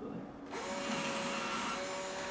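Small cordless drill starting up about half a second in and running at a steady whine, its bit boring a hole through a pumpkin's rind.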